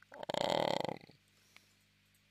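A man's drawn-out hesitation sound "eh", voiced with a rough, creaky rasp for about a second, then a pause.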